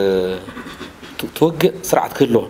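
A man speaking, with a short pause about half a second in before he resumes.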